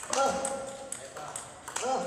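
Table tennis ball clicking sharply off bats and table during a backhand rally. A voice calls out twice, once just after the start and again near the end, each call held briefly.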